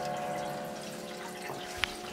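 Water and small ice chunks from a radiator's return garden hose dripping and plopping into hot water in a wood stove, with a couple of sharper plops near the end. Under it runs the steady hum of the small bilge pump circulating the water.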